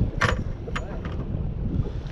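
Wind buffeting the microphone as a low, steady rumble, with a short sharp noise about a quarter of a second in.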